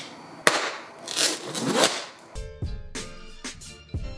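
A sharp click from a folding utility knife, then two scraping strokes as the packing tape on a cardboard box is cut. Guitar background music comes in a little past halfway.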